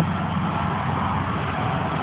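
Steady low rumble of running machinery, even and unbroken.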